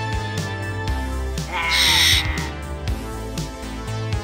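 A cockatiel gives one loud call, under a second long, about halfway through, over background music with a steady beat.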